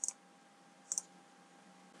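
Two computer mouse clicks about a second apart, each a quick press-and-release pair, from a Logitech B175 wireless mouse.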